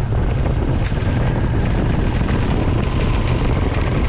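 Motorcycle riding along a road, with its engine and wind buffeting the microphone making a steady rush of noise.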